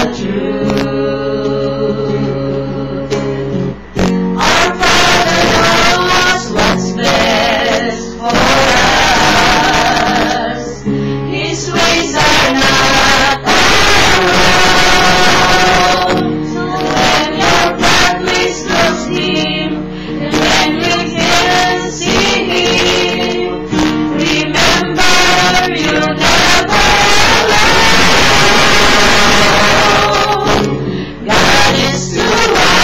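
A small mixed group of women and men singing a song together, accompanied by an acoustic guitar.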